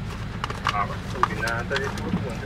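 Mostly speech, a short 'all right', over a steady low hum inside a stationary car, with a few faint clicks.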